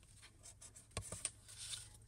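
Faint handling of white cardstock as a scored box tab is folded up, with a few small clicks about halfway through and a soft rubbing sound near the end.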